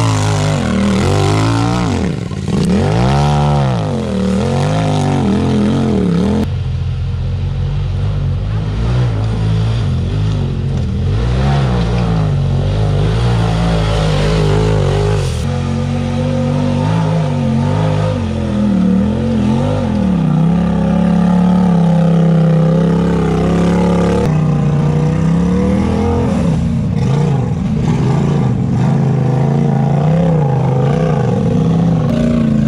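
Off-road side-by-side and rock buggy engines revving up and down under load while crawling up a steep rocky trail. The engine note changes abruptly three times as one clip gives way to another.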